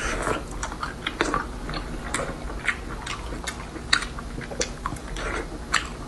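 Chewing of red-braised pork belly (hong shao rou), with wet mouth clicks at irregular intervals.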